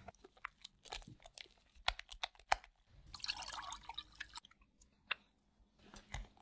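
Silicone spatula stirring egg yolk into thick mascarpone in a glass bowl: a run of small sticky clicks and taps against the glass, with a denser stretch of stirring noise about three seconds in and a single click near the end.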